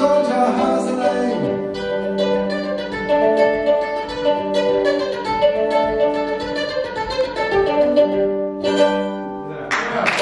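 A small-bodied acoustic plucked string instrument playing a steady instrumental passage of held and repeated notes. About a second before the end a burst of noise across the range sets in, which sounds like applause starting.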